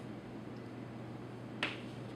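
A single sharp tap of chalk on a blackboard about one and a half seconds in, over a faint steady room hum.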